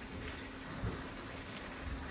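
Quiet, steady room noise: a faint hiss over a low hum, with a thin steady tone.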